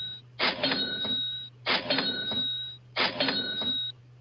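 Cash-register 'cha-ching' sound effect played three times, about a second and a quarter apart, each a sharp clash followed by a ringing bell tone that fades after about a second: a livestream super chat donation alert.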